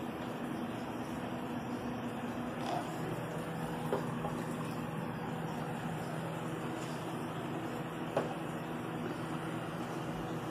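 Steady hum and hiss of aquarium aeration: an air pump running and an air stone bubbling. Three faint short clicks stand out.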